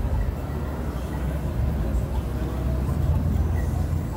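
Steady low rumble of city street ambience, with traffic and people's voices mixed in.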